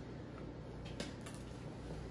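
Quiet room tone with a faint click about a second in.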